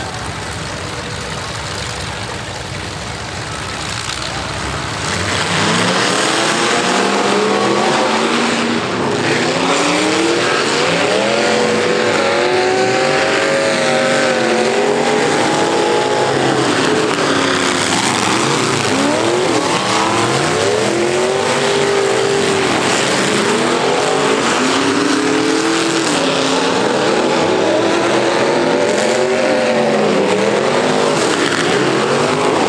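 Several dirt-track race car engines running low and steady, then from about five seconds in revving hard together, louder, with many engine pitches rising and falling at once as the cars accelerate and lift around the track.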